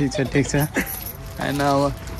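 Lively voices calling out in short bursts, then one drawn-out call about a second and a half in, over a light jingling rattle.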